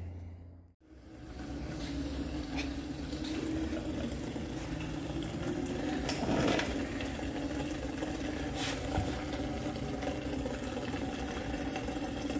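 Gasoline draining in a thin steady stream from a 1960 Chevrolet Impala's fuel-tank drain plug and splashing into a plastic bucket, starting about a second in.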